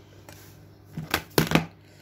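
Make-up brushes clattering against each other and their holder as one is pulled out: a quick run of four or five sharp clicks about a second in.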